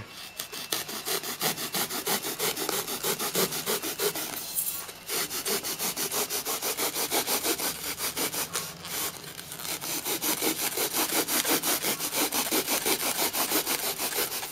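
A bare hacksaw blade, held in the hand, sawing back and forth along the edge of a block of expanded polystyrene bead foam, scoring a groove to slice off a sheet. Quick, steady strokes, about four a second, with short breaks about five and nine seconds in.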